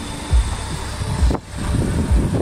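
Handling and wind noise on a handheld camera's microphone: low thumps a little under a second apart over a steady low rumble.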